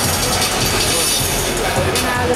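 Music over the arena's sound system with crowd hubbub, and a short laugh from a nearby person at the start.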